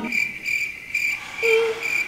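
Cricket-chirp sound effect: about five short, high chirps evenly spaced a little under half a second apart, the usual editing gag for an awkward silence. A brief lower tone sounds once about three-quarters of the way through.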